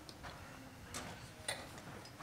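A few sharp clicks and taps in a quiet room, the loudest about one and a half seconds in.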